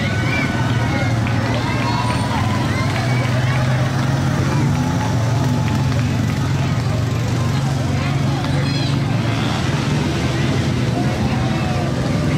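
Engines of slow-moving quad bikes and an SUV running steadily as they pass close by, a low hum under many people talking and calling out.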